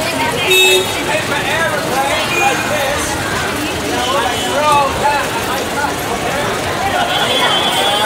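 Busy street noise: voices chattering and vehicle horns tooting briefly a few times.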